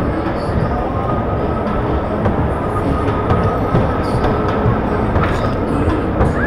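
Electric dodgem car driving across the steel floor of the ride: a loud, steady rumble from its wheels and motor, with a faint steady whine and a few light knocks.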